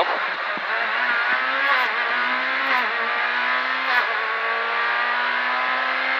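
Proton Satria S2000 rally car's two-litre four-cylinder engine heard from inside the cabin, accelerating hard through the gears. The pitch climbs and falls back at each upshift, about four shifts in quick succession, then holds steadier near the end.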